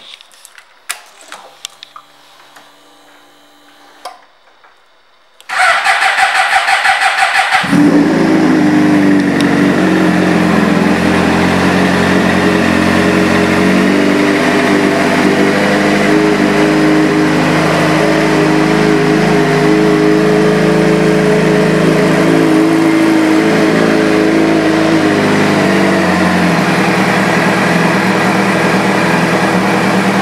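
A few light clicks, then about five and a half seconds in the starter cranks for about two seconds and the 2007 Suzuki GSX-R600's inline-four catches. It settles into a steady idle through a Two Brothers Racing aftermarket exhaust, the idle note shifting slightly near the end.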